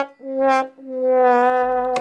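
Background music: a brass instrument plays a short note, then a long held note.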